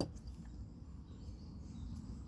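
Quiet pond-side outdoor ambience: a steady low rumble, like wind on a phone microphone, with a few faint bird chirps.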